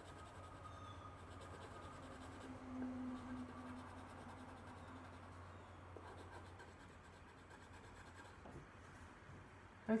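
Coloured pencil scratching on paper in short repeated strokes, faint, over a steady low hum.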